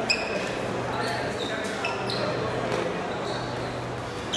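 Shuttlecock (featherball) play on an indoor court: a sharp knock just after the start, then several short high squeaks of shoes on the hall floor, over a steady murmur of voices echoing in the large hall.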